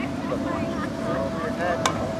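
Scattered distant voices of children and adults calling across an open field, over a steady low rumble. A single sharp click comes near the end.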